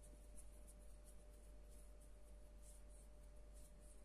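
Faint soft swishes and rubs of bare hands moving close to a sensitive microphone, several irregular strokes a second, over a faint steady hum.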